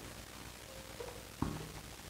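Faint sounds of a marker drawing on a glass board in a quiet room, with a soft short knock about one and a half seconds in.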